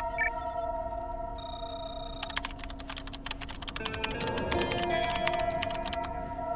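Background music with steady held tones, over rapid computer keyboard typing clicks and a few short electronic beeps from the computer.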